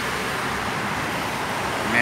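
Steady roadside traffic noise.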